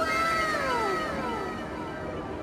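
A high, wailing call that falls in pitch over about a second, with a second similar falling call overlapping it. It starts suddenly and is louder than the mall background.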